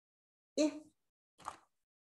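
A woman's voice saying a single short letter sound, the short 'i' of a phonogram flash card. About a second later comes one brief, faint noise.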